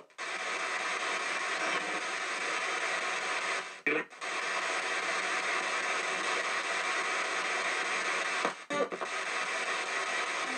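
P-SB7 spirit box sweeping through radio stations, played through stereo speakers: a steady wash of radio static, broken by short choppy fragments of broadcast sound about four seconds in and again near nine seconds.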